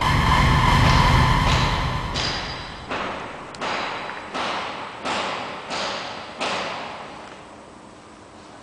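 A loud ringing impact with a deep rumble, followed by about seven evenly spaced thuds, each trailing a long echo as in a large empty hall, and fading away toward the end.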